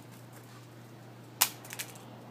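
Mobile phone landing on a flat stone: a sharp clack about two-thirds of the way in, followed quickly by two lighter clicks as it settles.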